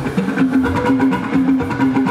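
Live jùjú band music: a repeating melodic line over a steady rhythm of hand drums and percussion.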